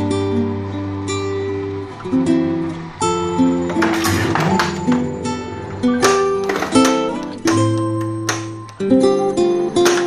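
Acoustic guitar music, plucked and strummed chords changing every second or so.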